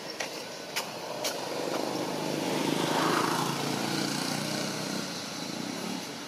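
A motor vehicle passing by: its engine noise swells to a peak about three seconds in and then fades. A few sharp clicks sound in the first second and a half.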